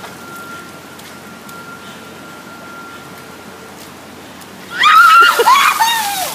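A bucket of ice water poured over a person and splashing onto the pavement, starting suddenly near the end, with a high shriek from the person being doused.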